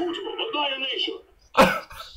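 Quieter voices, then a man's single short throat-clearing cough about one and a half seconds in.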